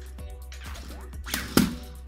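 Anki Vector robot dropping from its wheel stand back onto its treads on a wooden desk, landing with a sharp thump about one and a half seconds in, over steady background music.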